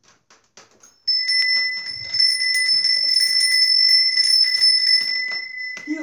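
A small bell ringing without a break for about five seconds, a bright high ring with a rapid flutter of strikes in it. It starts about a second in and stops just before the end, after a few faint clicks.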